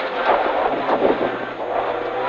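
Renault Clio Ragnotti N3 rally car's engine running hard on a special stage, heard from inside the cabin, with tyre and road noise.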